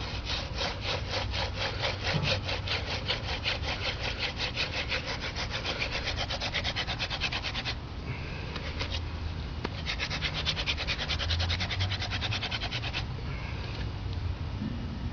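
Hand-drill friction fire: a dog fennel spindle spun back and forth between gloved palms, grinding in the notch of a sabal palm hearth board in a fast, even rasping rhythm of several strokes a second. The drilling breaks off about eight seconds in while the hands go back to the top of the spindle, then resumes and stops near the end.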